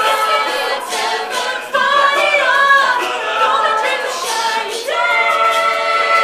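Mixed-voice a cappella group singing in close harmony, voices only with no instruments; about five seconds in the voices settle onto a held chord.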